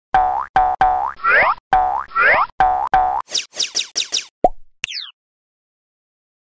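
Logo-intro sound effects: a quick run of short pitched notes that swoop upward, then a rapid flurry of five falling chirps, a short pop and a high falling zip. The sequence stops about five seconds in.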